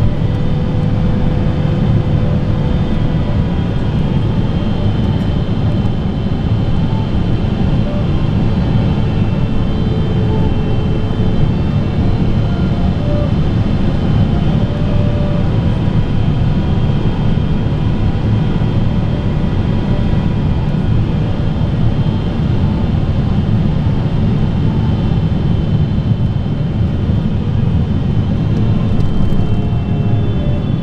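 Cabin noise of a Boeing 777-300ER on final approach: the steady low rumble of its GE90 engines and the airflow, with a few steady high whining tones over it.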